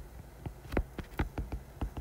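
Stylus tapping and scratching on a tablet screen while handwriting: a quick run of light, irregular clicks, about ten in two seconds.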